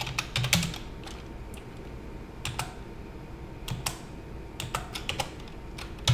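Computer keyboard being typed on: a quick run of keystrokes in the first second, then separate key clicks spaced out over the rest, as a command is entered.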